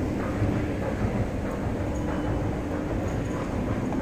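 Train station ambience: a steady low rumble with no distinct events.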